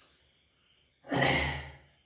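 A man's sigh: one breathy exhale of about half a second, coming after a moment of near silence about a second in.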